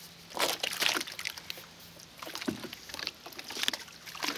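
Water sloshing and splashing as a wooden pole is pushed through the water to move a raft, in a few irregular surges, the strongest about half a second in.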